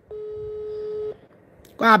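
Telephone line tone: a single steady beep about a second long, followed by speech.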